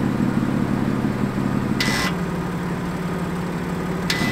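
BMW M2 Competition's twin-turbo straight-six idling through an aftermarket PCW exhaust while its exhaust valves are switched from a phone app. A short hiss about two seconds in, after which the idle note changes.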